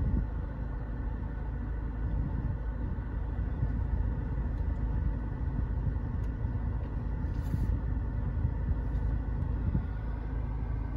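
Steady low rumble of the SEAT Ateca's 2.0 TSI turbocharged four-cylinder petrol engine idling with the car in reverse, heard from inside the cabin.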